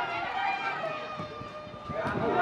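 Men's voices shouting and calling out across a football pitch during open play, drawn-out calls rather than clear words.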